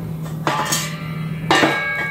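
Two metal clanks, about half a second and a second and a half in, each left ringing: a stainless steel gas tank and steel plate being set down on a steel welding table.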